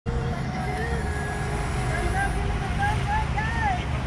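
A faint voice talking over a steady low rumble.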